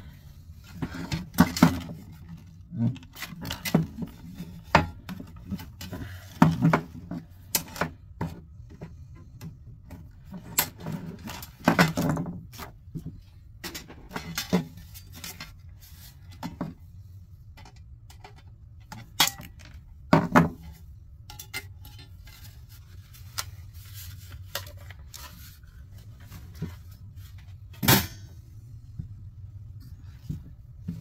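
Clinks, rattles and knocks of a computer power supply being taken apart by hand: the sheet-steel case and its circuit board handled and set down on a wooden bench, with the sharpest knocks about twelve, twenty and twenty-eight seconds in.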